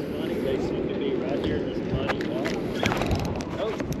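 Spinning reel being cranked during a lure retrieve, with a few light clicks, under steady wind and water noise and faint voices.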